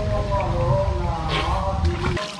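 Music of several held tones that bend slowly in pitch and shift to new notes about halfway through, over a steady low rumble.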